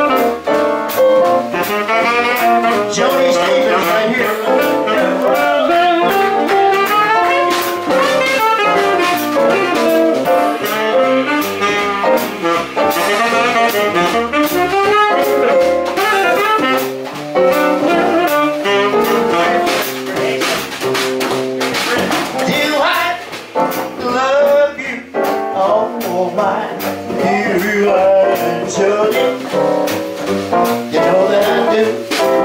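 Instrumental jazz music with a saxophone lead, playing steadily.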